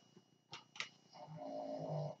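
Two light clicks about a quarter of a second apart, a makeup brush tapped into an eyeshadow palette. About a second in, a soft sustained voice-like tone follows and lasts about a second.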